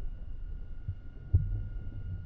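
Low, throbbing underwater-style ambient rumble with a single dull thump about a second and a half in, over a faint steady high tone.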